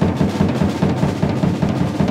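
Drum kit played fast, a dense rolling run of strokes weighted toward the low drums.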